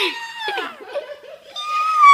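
A girl's high-pitched, excited squeal of "Yeah!" with laughter. A second long squeal, falling in pitch, comes near the end.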